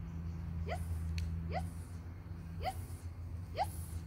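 A kelpie giving short, rising whimpers, four in the space of a few seconds, over a steady low hum.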